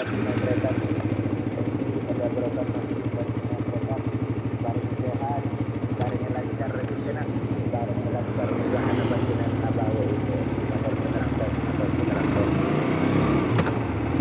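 Suzuki GSX-S150's single-cylinder engine idling steadily. Near the end its note changes as the bike pulls away.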